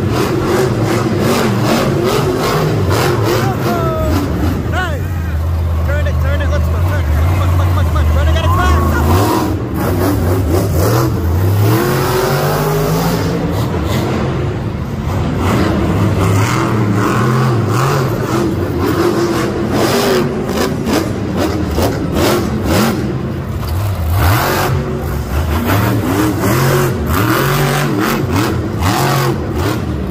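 Monster truck engines, supercharged V8s, running and revving hard, their pitch rising and falling with the throttle, loudest a few seconds in. Voices are mixed in under the engines.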